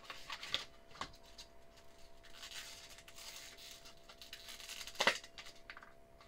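An M.2 SSD's retail packaging being opened by hand: a few clicks in the first second, a soft rustle of cardboard and plastic in the middle, and a louder crackle of the plastic tray about five seconds in.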